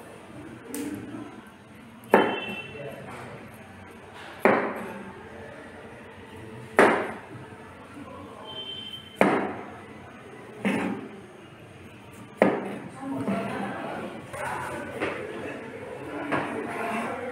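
Chef's knife chopping cauliflower on a plastic cutting board: six sharp knocks of the blade on the board, a couple of seconds apart, some with a brief ring. Lighter, quicker cutting sounds follow near the end.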